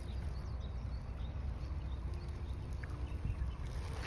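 Steady low rumble of wind on the microphone, with no distinct sound standing out.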